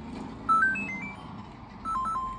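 A short electronic melody of quick beeping notes, stepping upward in pitch about half a second in, followed by two more beeps near the end.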